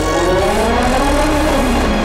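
Ligier LMP2 race car's V8 engine revving: its pitch climbs for about a second, then drops away, over background music.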